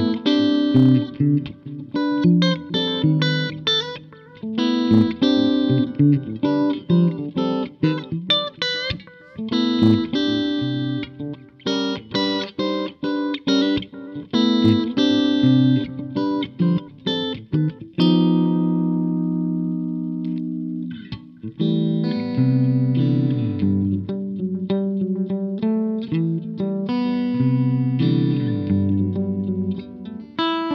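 Solo electric guitar: a G&L S-500 with Lollar Blackface pickups, through an MXR Carbon Copy analog delay and a Fender Jazzmaster Ultralight amp, playing a jazz-fusion line of quick single notes and chords. About eighteen seconds in, a chord is left to ring and fade for a few seconds before the playing resumes in lower chordal phrases.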